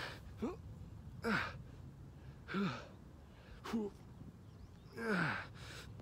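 A man doing push-ups gives a short, falling-pitched grunt of effort as he breathes out on each one. They come about every second and a quarter, five in a row, and are the strained breathing of someone tiring partway through a long set.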